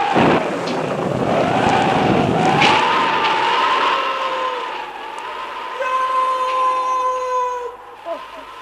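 Storm sound effect: a deep rumble of thunder in the first couple of seconds, then wind howling with a wavering whistle.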